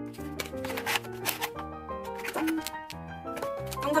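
A small cardboard box being opened by hand, with papery rustling and scraping clicks as its seal label and flaps are worked loose, over background music.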